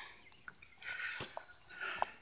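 Faint footsteps and handling noise as a phone camera is carried over dug clay ground, with a few small clicks, the sharpest about a second in.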